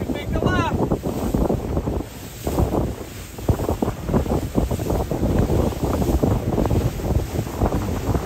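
Wind buffeting the microphone in uneven gusts, with a lull a couple of seconds in.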